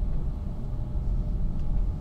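Steady low rumble of room background noise in a pause between speech, with a faint steady hum above it.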